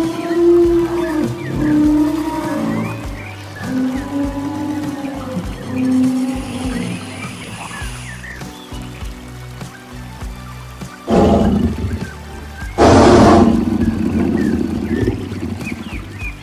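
Animal call sound effects over background music: a run of low, drawn-out calls that rise and fall in pitch in the first half, then two loud roars about eleven and thirteen seconds in.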